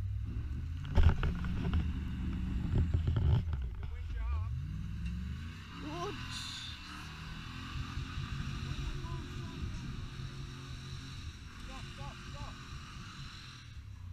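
A 4x4's engine running off-road, revving up about four to six seconds in. Loud knocks and rustles from footsteps and camera handling in the first few seconds.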